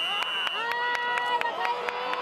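Crowd shouting and cheering, several voices holding long calls over one another, with scattered sharp claps or clicks. A high steady whistle-like tone sounds at the very start.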